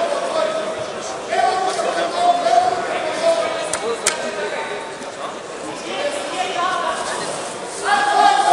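People's voices calling out on and off in a large, echoing sports hall, with one sharp click about four seconds in.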